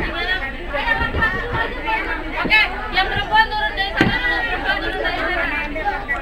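A group of young children chattering and talking over one another, a jumble of many voices.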